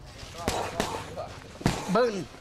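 Gloved punches and kicks smacking into leather kick pads: a few sharp hits spaced unevenly, with short voiced cries among them.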